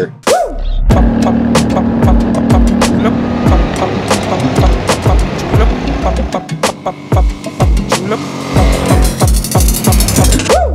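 Background music with a driving electronic beat: sharp percussion hits in a steady rhythm over deep bass notes that slide down in pitch.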